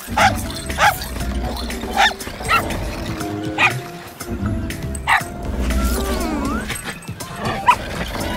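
A small cartoon dog yipping and barking in short bursts, several times, over background music, with a low rumble underneath.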